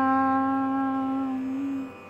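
A woman's chanting voice holding one long steady note on the last syllable of a Sanskrit verse, fading out near the end.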